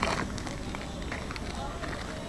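Indistinct voices of people talking in the background, with scattered footsteps on a paved path.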